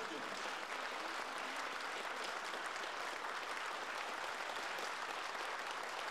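Audience applauding: dense, steady clapping with no breaks.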